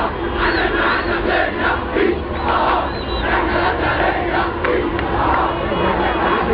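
Large crowd of student protesters shouting together, a loud, continuous mass of many voices.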